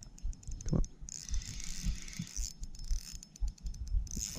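Spinning reel being cranked while a hooked bass is played on the line, its gears giving a rapid ticking.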